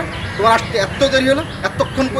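A man speaking Bengali, his voice rising and falling in lively, emphatic phrases.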